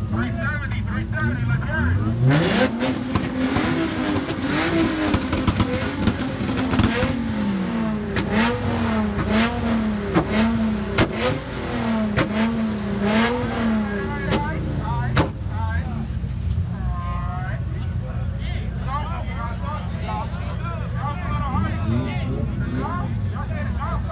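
A car engine revved up and held on a two-step launch limiter, its revs rising and falling repeatedly for about twelve seconds with a string of sharp exhaust bangs and pops, then dropping back to idle about fifteen seconds in.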